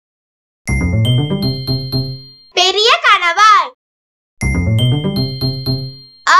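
A short bright chime jingle over a bouncing bass line plays twice, about a second in and again near the end. Between the two, a brief high-pitched, sliding child-like voice is heard.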